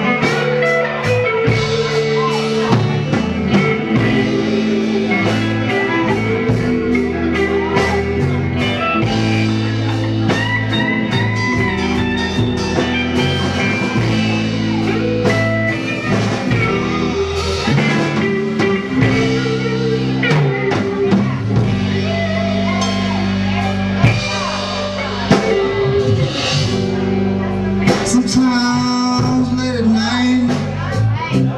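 Live blues-rock band playing an instrumental passage: electric guitar lead over bass guitar and a drum kit keeping a steady beat.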